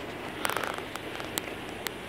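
Faint steady outdoor background noise with a handful of small clicks and rustles: a quick cluster about half a second in, then single ones later. The clicks and rustles come from the phone being handled as it pans.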